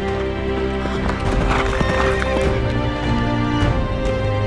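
Horses galloping in a race, a quick run of hoofbeats loudest around the middle, heard over background music with long held notes.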